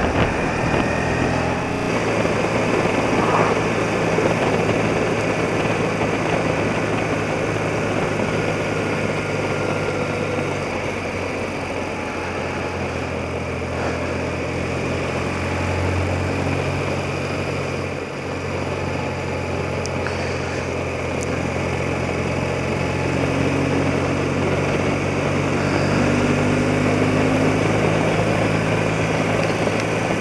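BMW motorcycle engine running steadily while riding, heard from the rider's seat with wind and road rush over it.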